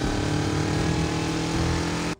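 A motor vehicle engine running at a steady pitch, cutting off suddenly just before the end.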